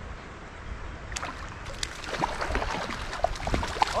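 A hooked trout splashing and thrashing at the surface of shallow creek water as it is played in, heard as scattered short splashes and ticks over the steady wash of the water.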